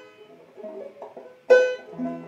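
Banjo strings plucked singly on a Vega banjo while it is being tuned: a few soft notes, then one loud note about a second and a half in that rings out and fades.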